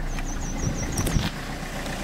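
Wind rumbling on the microphone with camera handling noise. Near the start there is a quick run of about seven short, high chirps, and a single click about a second in.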